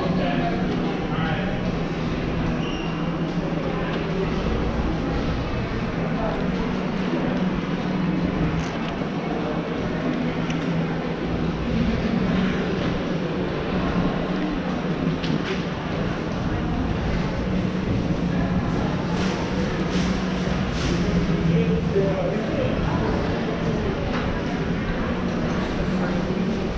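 Busy indoor shopping-mall ambience: a steady low hum under the background murmur of people's voices, with no single sound standing out.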